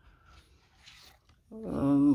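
Near silence, just faint room tone, for about a second and a half. Then a woman starts speaking near the end.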